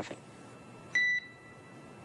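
A single short electronic beep on the mission radio loop about a second in: one clear tone that cuts off quickly and leaves a faint fading ring.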